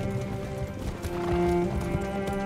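Film score of low bowed strings holding long notes, over the clip-clop of several horses' hooves on turf.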